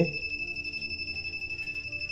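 Buzzer of a pen-type non-contact AC voltage tester giving a steady high-pitched beep as its tip is held by a wire: the signal that the wire is live and carrying current.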